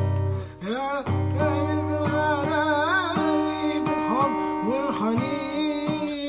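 A man singing with his own strummed acoustic guitar; the voice comes in about a second in over the steady strumming.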